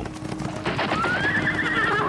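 A horse neighing: one long whinny with a quavering pitch that rises and then eases down, starting about half a second in. Faint background music runs underneath.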